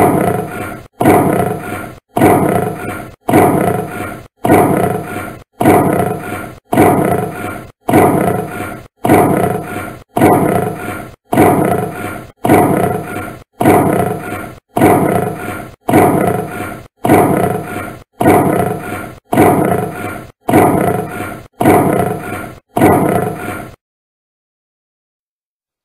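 A lion roaring: the same short roar repeated about once a second, some twenty times, each one starting loud and fading away before the next.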